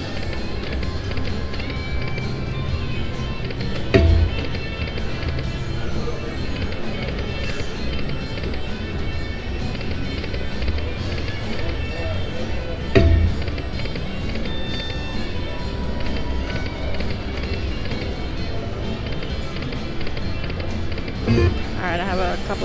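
Aristocrat Lightning Link slot machine playing its electronic music and reel-spin sounds as the reels spin and stop, with two heavier thuds about four and thirteen seconds in.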